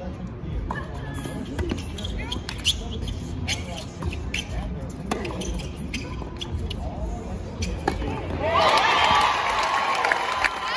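Tennis rally on a hard court: repeated racket strikes on the ball and ball bounces over a murmuring crowd. About eight and a half seconds in, the crowd breaks into loud cheering and shouts as the point ends.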